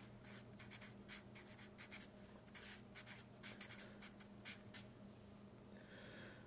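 Felt-tip marker writing on paper: a run of faint, short, irregular strokes as words are written out by hand.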